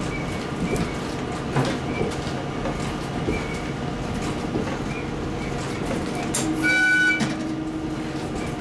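KiHa 40 diesel railcar running, with a steady drone and occasional clicks from the wheels on the rails. About three-quarters of the way through, a short warning blast on its horn, the loudest sound here, as it passes a station.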